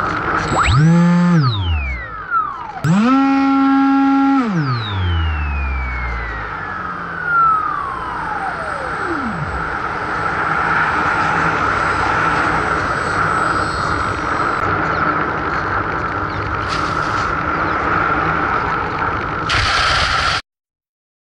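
Electric motor and propeller of a Bixler RC glider, heard from an onboard camera. The motor whine climbs in pitch and drops away twice, then holds briefly before the throttle is cut and the pitch slides slowly down over about five seconds. After that comes a steady rush of air as the plane glides.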